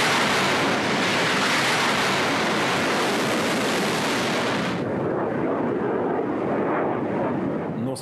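Kalibr cruise missiles launching from warships: the steady rushing noise of the rocket boosters, which turns duller and lower about five seconds in.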